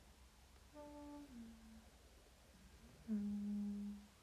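A woman humming with her mouth closed: a short note that slides down in pitch about a second in, then a louder, steady held note near the end.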